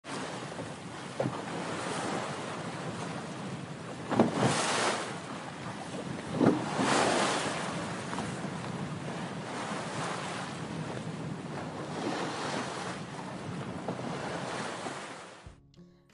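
Ocean surf: a steady wash of waves with louder surges about four and six and a half seconds in, fading out near the end.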